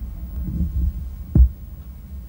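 Steady low hum on a VHS camcorder recording, with one short dull thump about one and a half seconds in.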